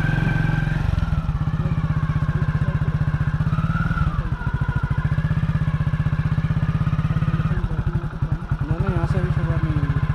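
Motorcycle engine running steadily at low revs, a rapid even thudding, as the bike creeps slowly along the road edge.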